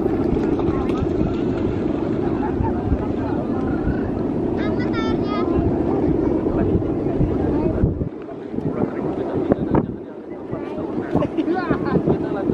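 Steady low drone of a guangan, the bow-shaped hummer on a large Balinese bebean kite, sounding in the wind as the kite flies, with wind buffeting the microphone. The drone drops away briefly about eight seconds in and again near ten seconds.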